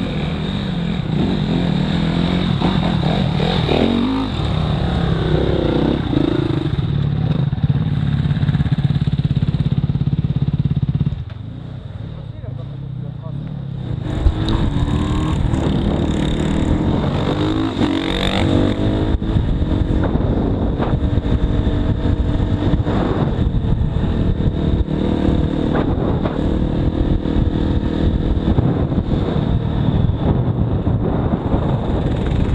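Off-road motorcycle engine running and revving up and down as the bike is ridden. It drops to a quieter note for about three seconds around the middle, then picks up again.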